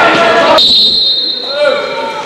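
Voices shouting in a sports hall during a futsal match. A steady high tone starts about half a second in and holds for over a second, while the background noise drops sharply.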